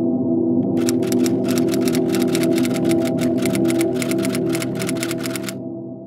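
A sustained musical drone of low held tones, with rapid typewriter key clacks, about six a second, starting about a second in and stopping shortly before the drone fades near the end.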